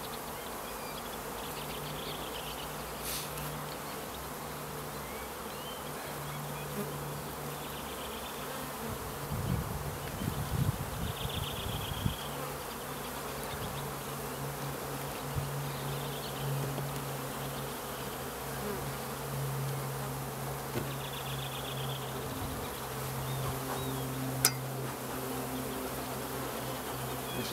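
Honeybees buzzing steadily around an open hive, the hum wavering in pitch as bees fly close. A stretch of louder low bumping noise comes about ten seconds in, and a single sharp click comes near the end.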